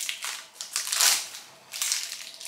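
Crinkly rustling in three bursts, the loudest about halfway through, from the plastic wrapper of a Knoppers wafer bar being opened by hand.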